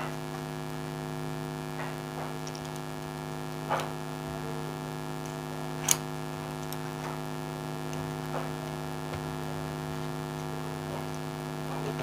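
Steady electrical mains hum with a stack of even overtones, with a few faint ticks and taps as copper winding wire is worked around a motor stator's teeth.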